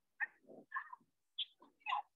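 About half a dozen short, high-pitched vocal calls in quick succession, each lasting a fraction of a second.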